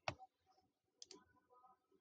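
Computer mouse clicking: two short clicks about a second apart, with near silence between them.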